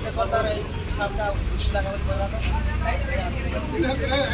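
Indistinct voices of people talking, over a low, steady rumble.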